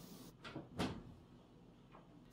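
Two faint, brief knocks, about half a second and just under a second in, then silence.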